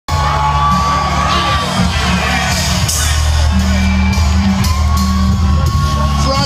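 Live hip-hop music played loud through a concert sound system, with a heavy steady bass line and a few held high tones, and crowd members whooping and yelling.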